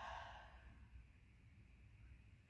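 A person's soft, breathy exhale, like a sigh, lasting about half a second, then near silence with faint low room hum.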